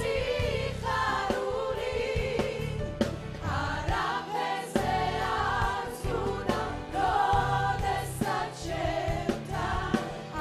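Church worship choir singing a gospel song, mainly women's voices, with the lead singers amplified through handheld microphones.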